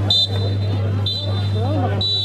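Spectators' voices at a football ground, with short high whistle blasts repeating about once a second over a steady low hum.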